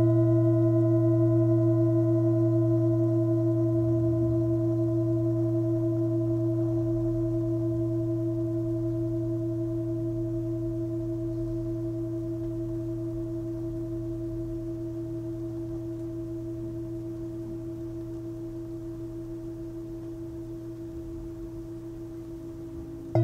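Antique singing bowl with a low fundamental near 116 Hz (B2) and several higher overtones, ringing out in one long tone that fades slowly, with a gentle wavering pulse.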